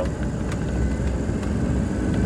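2003 Ford 6.0 Powerstroke V8 turbodiesel accelerating at wide open throttle, heard from inside the cab as a steady drone.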